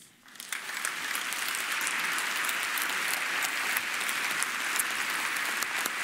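Audience applauding: the clapping swells up within the first second and then holds steady.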